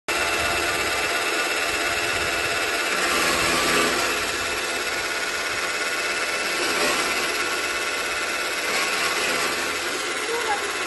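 Electric four-blade chaff cutter running with a steady motor whine, its blades chopping dry fodder stalks as they are fed in. The chopping comes in louder surges a few times.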